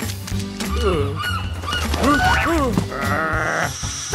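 A cartoon character's wordless straining whines and grunts, sliding up and down in pitch, over background music.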